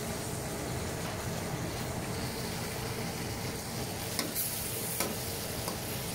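Chicken and vegetables sizzling in a hot wok as they are stir-fried with a metal ladle, with a few sharp clicks of the ladle against the wok a little after four seconds in.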